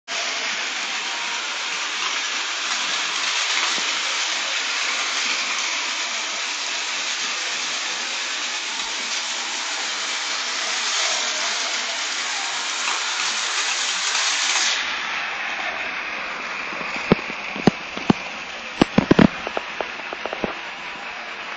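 Several battery-powered Plarail toy trains running on plastic track: a steady rattling hum of their small motors and wheels, which thins out about three-quarters of the way in. Near the end a quick string of sharp plastic clicks and knocks.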